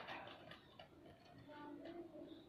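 Near silence, with a few faint ticks in the first second and faint voices later.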